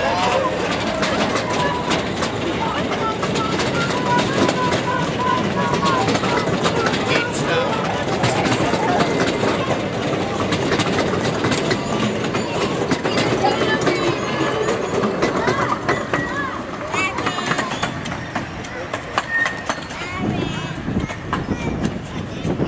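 Passenger cars of a 5/12-scale ride-on railroad rolling past, their wheels making a steady run of clicks on the track. Riders' voices are heard over it.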